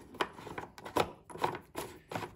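Plastic fuel cap being screwed onto the fuel tank of a STIHL BG 56 leaf blower by hand: a run of light, irregular clicks with some plastic rubbing.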